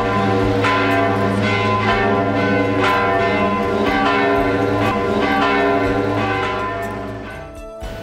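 Church bells of Oslo Cathedral ringing, several bells struck in turn at about two strikes a second, each ringing on over the next. The ringing cuts off suddenly near the end.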